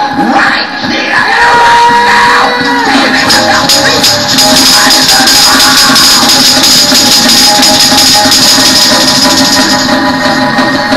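Hand-held jingle tambourine shaken in a fast, steady rhythm over loud up-tempo gospel music during a praise break, with a note held for a couple of seconds about a second in.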